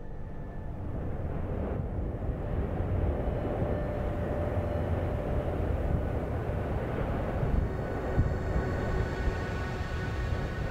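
Deep, steady rumble of an erupting volcano, building over the first couple of seconds and then holding.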